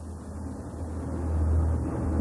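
A low, steady background rumble that swells over the first second and a half, then eases slightly.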